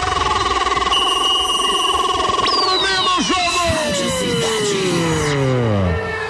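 Electronic music-like sound effect: a warbling steady tone for about two and a half seconds, then several tones gliding slowly down in pitch to the end.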